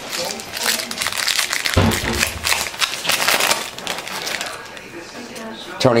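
Foil trading-card pack wrapper crinkling and crackling as it is torn open and handled, with one dull knock about two seconds in.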